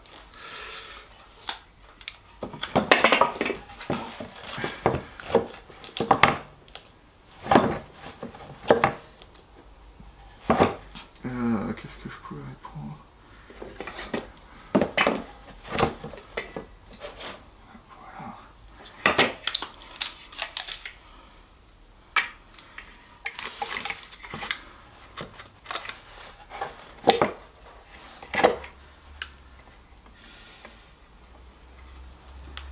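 Irregular knocks and clatter of wooden bass body blanks and metal clamps being handled and set down on a workbench, as the body wings are fitted against a neck-through blank. There is a brief creak about a third of the way in.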